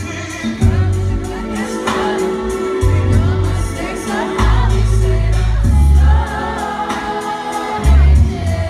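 Live R&B slow jam through a concert PA: a male singer's voice over deep, drawn-out bass notes.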